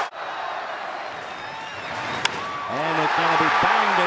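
Ballpark crowd noise, with one sharp crack of a bat hitting a pitched baseball a little past halfway, after which the crowd swells.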